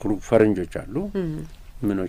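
Only speech: continuous talking with short pauses, no other sound.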